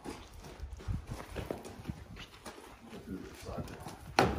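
Tennessee Walker mare's hooves stepping: a series of irregular, soft knocks as she walks up to the trailer.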